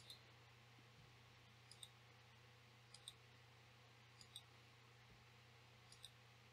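Faint computer mouse clicks: five pairs of short clicks, each pair a quick press and release, spaced a second or so apart, over a faint low steady hum.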